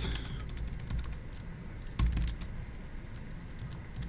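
Typing on a computer keyboard: quick keystrokes in short runs, with one heavier knock about halfway through.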